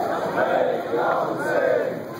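A large crowd of men shouting together, many voices calling out at once.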